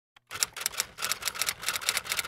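Typewriter keystroke sound effect: a quick, even run of key clacks, about seven a second, starting about a third of a second in, accompanying text being typed onto a title card.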